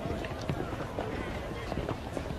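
Indistinct chatter of several voices outdoors, with irregular footsteps of people walking past.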